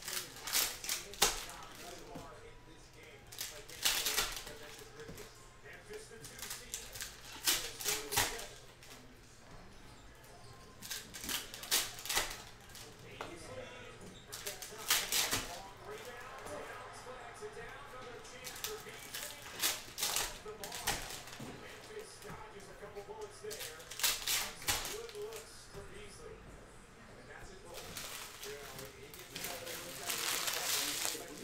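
Trading cards being flipped through by hand: bursts of quick, sharp card clicks and snaps every few seconds.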